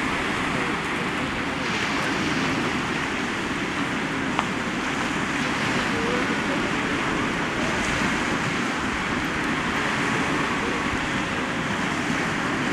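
Sea surf breaking and washing onto a rocky shore, a steady rush of waves without pause, with one sharp click about four seconds in.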